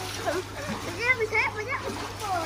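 Water splashing as a child swims in a swimming pool, with a child's voice calling out briefly in the middle.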